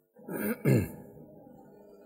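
A man clears his throat in two quick voiced bursts, each dropping in pitch, after which a faint steady hum remains.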